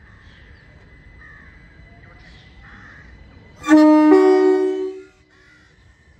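Class 377 Electrostar electric train sounding its two-tone horn once, for about a second and a half, starting past the middle: a lower note first, with a higher note joining a moment later.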